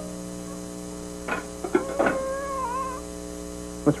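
A few short, wavering whine-like animal cries about a second and a half in, over a steady low hum.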